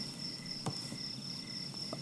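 Faint crickets chirping in a steady high trill, with a couple of faint ticks.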